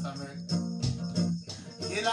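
Acoustic guitar and a hand drum playing together in a steady rhythm, with a high jingling percussion on the beat.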